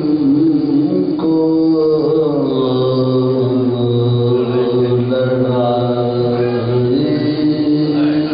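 Male voices chanting a marsiya, an Urdu elegy, in unaccompanied soazkhwani style, drawing out long held notes that shift slowly in pitch, with one voice holding a lower line beneath another.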